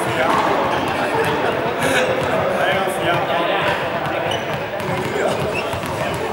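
Small juggling balls dropping and bouncing on a sports hall floor, amid overlapping chatter of several people in an echoing hall.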